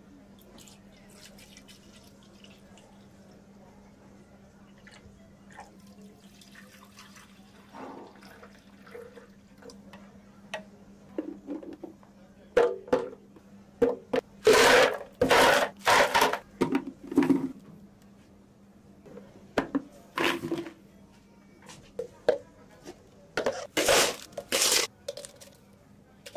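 Drink-making at a counter with plastic blender cups: soft pouring and handling over a low steady hum, then from about halfway a run of loud, short clattering knocks in two clusters.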